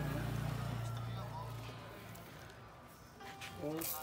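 Low, steady hum of electric grain-mill machinery that fades away about two seconds in.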